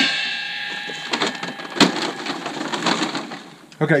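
A stainless steel pail knocks and rings, several clear tones fading over about a second and a half, while charcoal briquettes are tipped out around the outer ring of an Orion cooker, clattering in scattered clicks and knocks.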